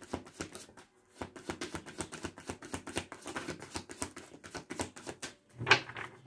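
A tarot card deck being shuffled by hand: a quick, even run of crisp card clicks that pauses briefly about a second in, then carries on. A single short, louder sound comes near the end.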